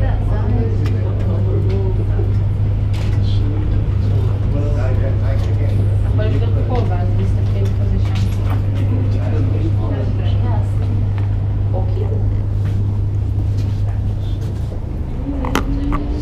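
A steady low hum with indistinct voices of people talking in the background, and a few light clicks.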